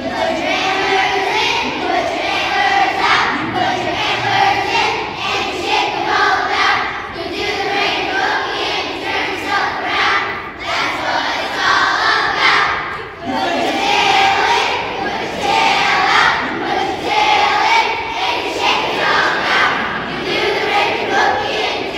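A group of children singing together on stage, many young voices in unison, with a short break between phrases about thirteen seconds in.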